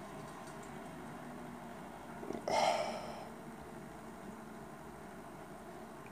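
A single sniff, about two and a half seconds in, as a person smells the aroma of a glass of beer; otherwise quiet room tone.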